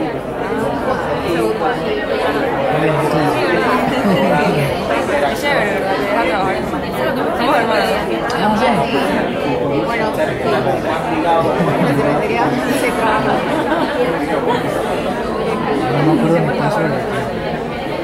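Many people talking at once: overlapping conversations and chatter, with no single voice standing out.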